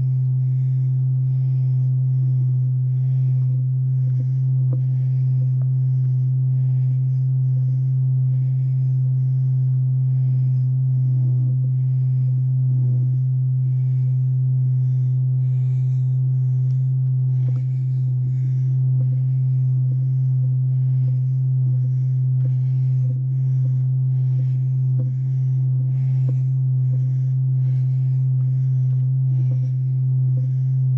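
A loud, steady low-pitched hum runs throughout. Over it, footsteps crunch on a dirt-and-gravel trail at an even walking pace of about two steps a second.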